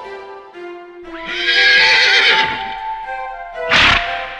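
Horse whinny sound effect, one long wavering call about a second in, over light background music, followed near the end by a short loud burst.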